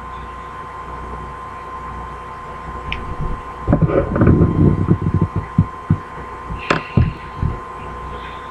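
A steady hum with a thin high tone under it. About halfway through comes a run of low, irregular thuds and rumbles, with one sharp click near the end of them.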